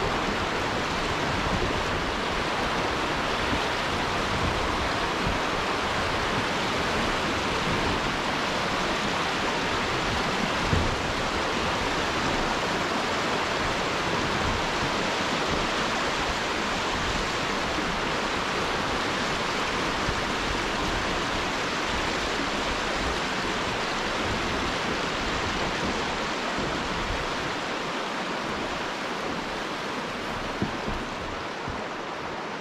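Shallow river rapids rushing steadily over rocks, easing a little near the end. A single brief knock about ten seconds in.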